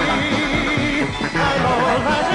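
Band music with a wavering, vibrato-like melody line over a steady low rhythm.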